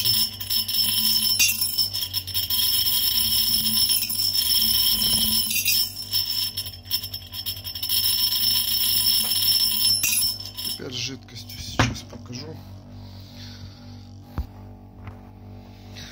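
A piece of nail spun by a magnetic stirrer, rattling and clinking fast against the bottom of an empty glass jar: a continuous metallic jingle. It cuts off about eleven seconds in, with a single knock shortly after.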